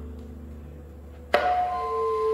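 A low drum resonance dies away, then about a second and a half in comes one sharp, loud hit on the drum kit. Right after it, the soprano saxophone begins sustained pitched notes.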